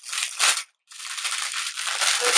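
Plastic packaging of a hair bundle rustling as it is handled, breaking off for a moment under a second in and then going on.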